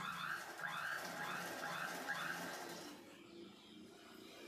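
Faint bird chirps: a few short rising-and-falling calls in the first two seconds over low background noise.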